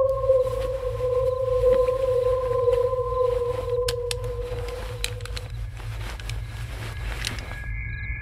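Suspense background score: a low rumbling drone under a long held tone that fades out about five and a half seconds in, with scattered faint clicks and a higher held tone coming in near the end.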